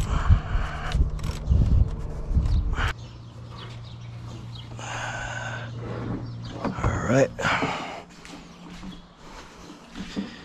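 Light knocks and rubbing as a plastic oil filter housing cap is unscrewed by hand and lifted off the engine, loudest in the first few seconds.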